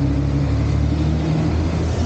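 A motor vehicle engine running steadily with a low hum.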